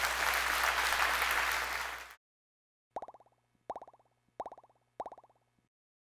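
Audience applause that cuts off suddenly about two seconds in, then, after a short silence, four short pitched electronic tones about two-thirds of a second apart, each starting sharply and dying away, an outro sound logo over the end card.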